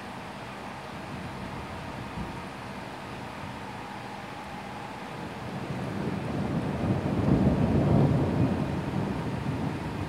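Rolling thunder that builds about halfway through, peaks and slowly fades, over a steady hiss of heavy rain.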